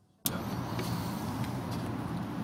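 A brief dead silence at the edit, then a steady low hum of distant city traffic.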